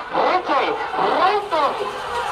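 A man calling out over a public-address loudspeaker in short, rising-and-falling shouts.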